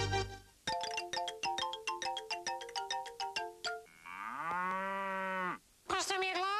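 A theme tune's closing chord gives way to a quick tinkling jingle of short plucked notes, about six a second, then a single drawn-out moo-like call that rises, holds and falls away over about a second and a half.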